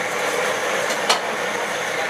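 Long knife slicing al pastor pork off a vertical spit, with one sharp click of the blade about a second in, over steady background noise.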